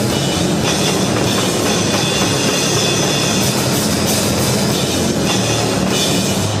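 Grindcore band playing live at full volume: pounding drums and crashing cymbals under a heavily distorted bass, one dense wall of noise with low notes held underneath.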